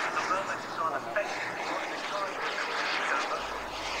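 Turbine-powered model jet in flight: a steady rushing jet roar, with faint voices mixed in underneath.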